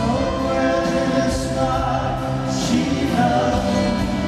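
A rock band playing a slow song live, with sung vocals over acoustic guitar and drums.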